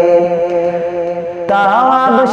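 Bengali Islamic gojol: a steady, held chant-like drone, then about one and a half seconds in a male voice comes in singing a winding melody.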